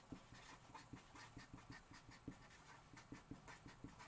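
Faint scratching of a felt-tip marker on paper, a quick series of short pen strokes as capital letters are written.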